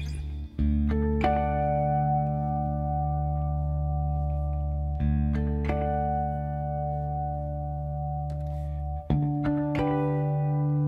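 Hollow-body electric guitar playing a slow song intro: a chord struck and left to ring about every four seconds, with a higher note added just after each, over a steady low ringing note.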